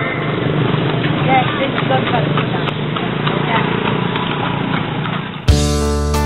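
Mixed outdoor ambience of people's voices with scattered knocks and clatter. About five and a half seconds in it cuts suddenly to strummed acoustic guitar music.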